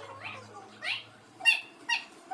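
A toddler's short, high-pitched squeals, several in quick succession, the loudest about halfway through.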